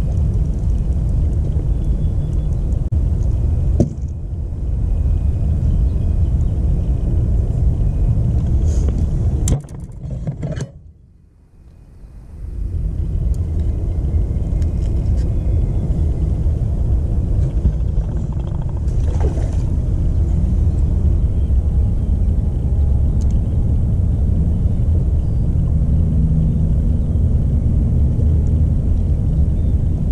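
Steady low rumble of wind buffeting an action camera's microphone. There is a sharp knock about four seconds in and a brief lull a little before the middle.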